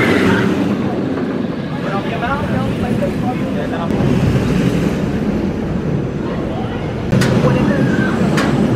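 Intamin Hot Racer steel roller coaster train rolling along its track past the listener, a steady low rush of wheels on steel, with riders' voices shouting over it. A sharp click comes near the end.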